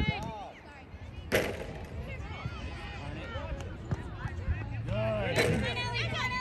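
Voices calling and shouting across a soccer field, with a sharp thump about a second and a half in and another shortly before the end.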